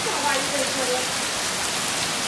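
Heavy rain pouring down, a steady hiss.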